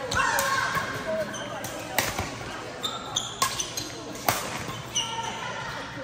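Badminton racket strings striking a shuttlecock in a doubles rally: four sharp hits, one about every second from about two seconds in. Short high squeaks of court shoes and people's voices come between them.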